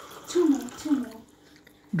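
Juice pouring from a plastic jug into a glass, a splashing trickle that stops shortly after the start. Two short murmurs from a voice follow within the first second.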